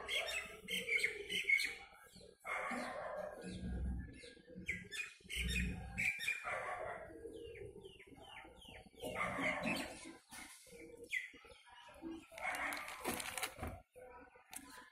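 Plastic fertiliser packet crinkling and rustling in uneven bursts as it is handled and turned over.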